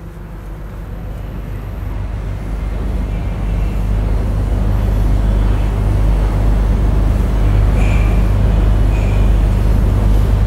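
A low, steady mechanical rumble that grows gradually louder.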